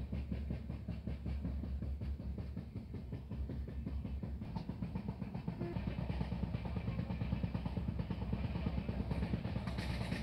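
Passenger train running at speed, heard from inside a coach by an open window: a steady low rumble with rapid, dense rattling of wheels and coach on the rails.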